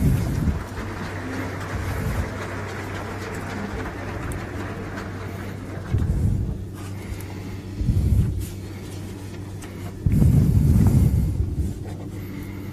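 Open podium microphones carrying a steady low electrical hum, with dull low thumps about six and eight seconds in and a louder low rumble from about ten seconds in, as the speaker reaches and settles at the podium.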